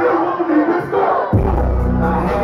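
Live hip-hop show: a crowd and the rapper shouting together over the PA, then about 1.3 s in a heavy bass beat drops in and carries on.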